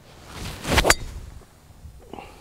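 A golf driver swung down through the air with a rising swish, ending in a sharp crack as the clubhead strikes the teed ball just under a second in.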